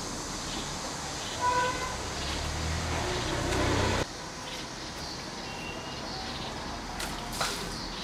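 A brief car horn toot about a second and a half in, then a vehicle rumble that swells and cuts off suddenly at about four seconds, over steady outdoor background noise.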